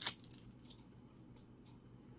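A juice box's plastic-wrapped straw being handled: one sharp plastic crackle right at the start, then a few faint small clicks over a faint steady low hum.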